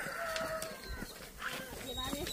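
Chickens in the background, clucking, with a faint rooster crow: one short held call about a third of a second in.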